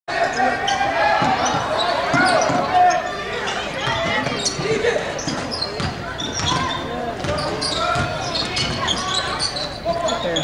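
Basketball dribbled on a hardwood gym floor, with spectators' voices throughout.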